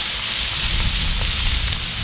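Thin-sliced ribeye and butter sizzling on a hot cast-iron griddle, a steady hiss with a low rumble underneath.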